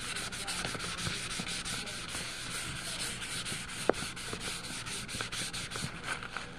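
A crumpled tissue rubbed quickly back and forth over a coloured-pencil drawing on a colouring-book page, blending the colour: a steady papery scrubbing in about six strokes a second. A single sharp click is heard about four seconds in.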